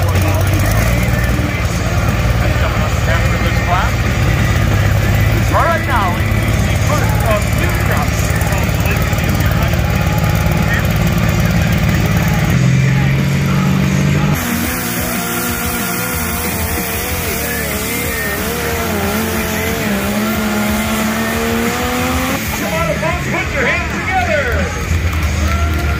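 Modified diesel pickup pulling a sled at full throttle, its engine running hard and steady under load, with the pitch stepping up a little shortly before the midpoint. About halfway through, the loud engine sound drops off abruptly, and a quieter stretch follows with a wavering voice over it.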